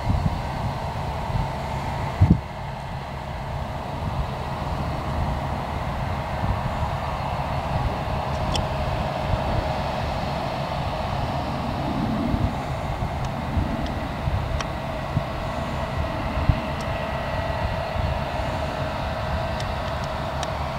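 New Holland combine harvester and John Deere tractor running side by side while the combine's unloading auger pours grain into a trailer: a steady droning hum of machinery over a low rumble. A single thump about two seconds in.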